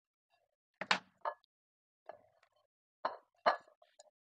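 Kitchen items being handled at a counter: a handful of short knocks and clinks, spaced about a second apart.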